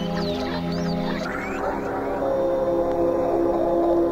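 Music played from a cassette tape: layered sustained tones with short, high gliding whistles. A little past a second in, the low notes drop away, leaving a slowly falling tone over a steady one.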